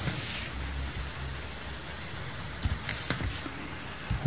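Steady hiss and low hum from an open microphone, with a few faint clicks of a computer mouse, one just after the start and a cluster near the end.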